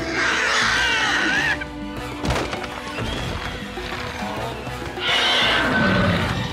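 A cartoon dinosaur's shrill, wavering cry, heard twice, over background score music, with a single thud about two seconds in.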